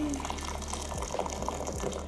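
Boiling water being poured from a kettle into a bowl: a steady splashing stream.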